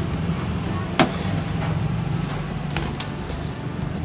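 A steady low hum, with one sharp click about a second in and a fainter tick near three seconds.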